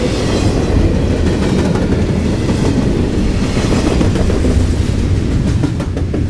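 Double-stack container freight train rolling past close by: the well cars give a loud, steady low rumble, with a run of sharp wheel clicks near the end.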